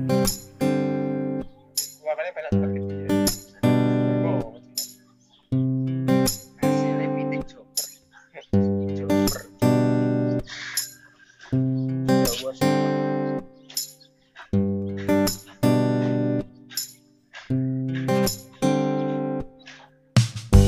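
Background music: plucked acoustic guitar chords, each ringing out and dying away, struck about once a second.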